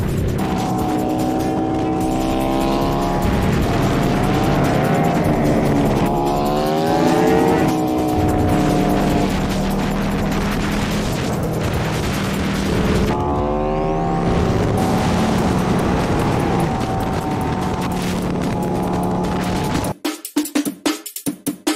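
Cruiser motorcycle engine running under way with wind rush, its pitch climbing as it accelerates about six seconds in and again near the middle.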